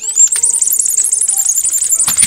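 Ring-shaped whistle candy blown between the lips: a shrill, high-pitched whistle with a fast, regular warble of about eight wavers a second.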